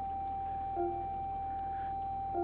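Electronic beeps from a Toyota Vellfire's cabin: a steady high tone held throughout, and one short two-pitched beep a little under a second in, while the 360° camera display is showing and its touchscreen is being pressed.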